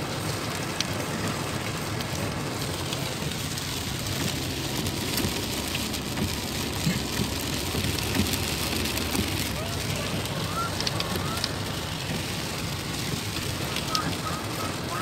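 Rain and road noise heard from inside a moving car: a steady low rumble under the hiss of rain on the car, with a few light ticks.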